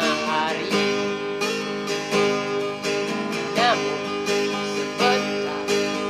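Cutaway acoustic guitar strummed in a steady rhythm, full chords ringing with each stroke, playing an instrumental passage between sung verses.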